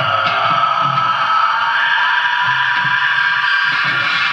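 Live metal band playing: a long, steady high note is held through most of the stretch over bass and drums.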